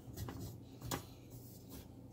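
Faint rubbing and one light click about a second in, from a hand handling a cast iron skillet on a stovetop, over a low steady hum.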